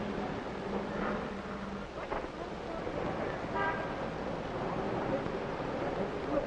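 City street traffic noise with a short car-horn toot about three and a half seconds in.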